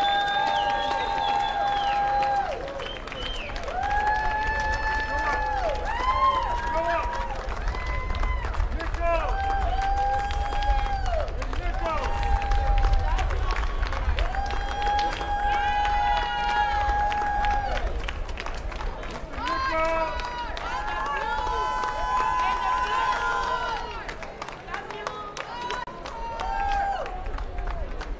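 Voices singing long held notes, each lasting a second or two and sliding down at its end, over a steady low rumble.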